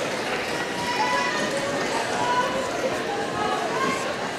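A large gym hall full of overlapping distant voices from skaters and spectators, with the rolling of quad roller skates on the wooden floor underneath.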